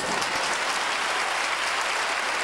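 Theatre audience applauding: dense, steady clapping from a full house right after the orchestra's final chord.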